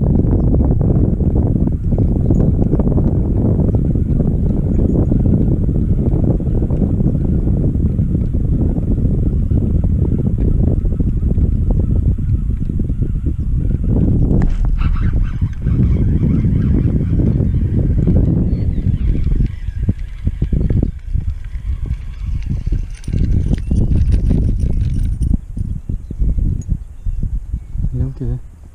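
Wind buffeting the microphone: a loud, steady low rumble that breaks up into choppy gusts in the last third.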